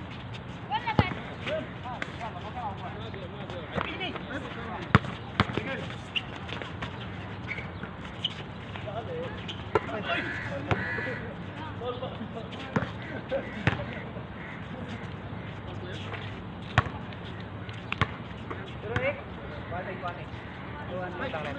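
A basketball bouncing on a hard outdoor court: scattered sharp thuds at irregular intervals, several in quick succession at times, with players' voices calling in the background.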